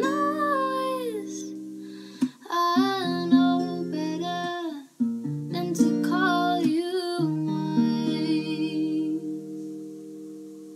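A woman singing over her own strummed acoustic guitar. Chords ring and are restruck every two to three seconds, with sung phrases laid over them. The voice drops out near the end while the last chord rings on.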